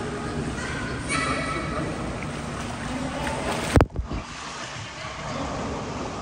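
Pool water sloshing and splashing as a child is let go and swims, with a sudden loud thump about four seconds in. A brief voice sounds about a second in.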